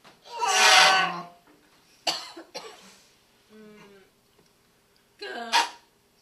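Choir improvising with wordless vocal sounds: loud, breathy, cough-like bursts with gaps of quiet between them. A long burst comes near the start, two sharp short ones follow about two seconds in, then a faint sliding sung note, and another burst near the end.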